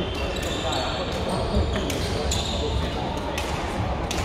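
Badminton rally: several sharp racket strikes on a shuttlecock, spaced under a second apart, over background chatter in a large sports hall.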